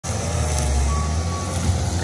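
Diesel engine of a skid-steer loader working, a steady low rumble, with a single high beep about a second in.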